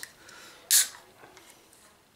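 A beer can's ring-pull being cracked open: one short, sharp hiss of escaping gas a little under a second in.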